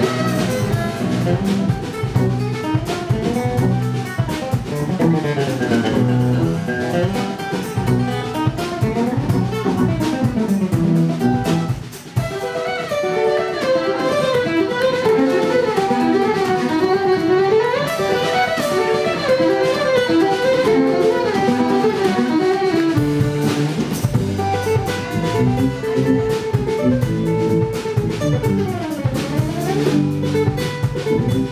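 Live acoustic guitar, fiddle and drum kit playing a gypsy-jazz-inspired instrumental tune in quick, busy runs, with a brief drop-out about twelve seconds in.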